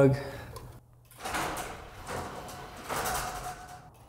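Overhead sectional garage door running on its electric opener, a steady rumbling run with a faint constant hum, starting about a second in after a few words of speech.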